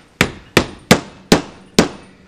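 A small hammer driving an upholstery tack through burlap into a western cedar board: five sharp taps about 0.4 s apart.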